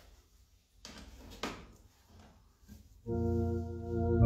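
A few knocks and paper rustles as a hymnbook is handled and set on the organ's music stand, then about three seconds in an MD-10 EVO electronic organ starts a held chord.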